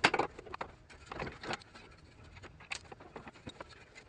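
Metal suspension and brake parts clinking and knocking as they are handled and fitted by hand at the front hub and caliper. A sharp knock at the very start is the loudest, followed by scattered irregular clicks.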